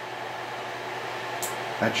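The cooling fan of an Elmo 35-FT(A) sound filmstrip projector running with a steady, even noise.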